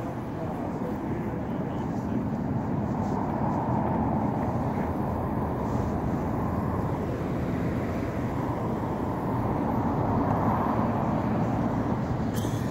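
Road traffic on wet pavement: a steady rumble with tyre hiss that swells twice as vehicles pass.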